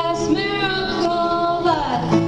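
A woman singing live into a microphone over acoustic guitar accompaniment, holding notes, with her voice gliding down in pitch at the end of a phrase near the end.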